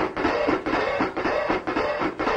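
A band playing the opening of a song: guitar over a steady beat.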